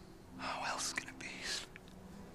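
A breathy whisper of a few words, starting about half a second in and lasting about a second, over faint steady low tones.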